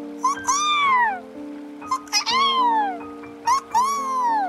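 An animal calling three times, each call a clear cry that rises briefly and then slides down in pitch, each led by a short click, over background music with held keyboard notes.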